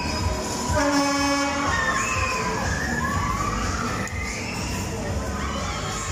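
Riders screaming on a fast-spinning fairground ride, over the ride's steady running noise. About a second in, a horn-like tone sounds for under a second.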